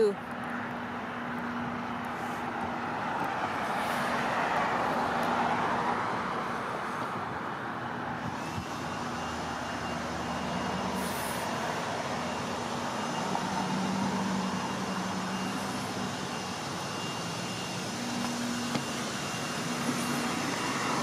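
Passing road traffic: the tyre and engine noise of cars swells and fades a couple of times over a steady low hum.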